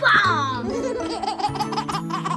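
A baby laughing: a high falling squeal, then a run of quick giggles, over background music.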